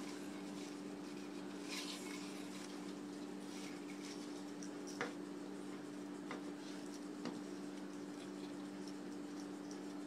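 Faint rustling of wired fabric ribbon being handled and wound into loops by hand, with two small clicks, one about five seconds in and another about seven seconds in.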